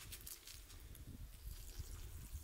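Faint, scattered crunches of footsteps on gravel over a low, steady rumble.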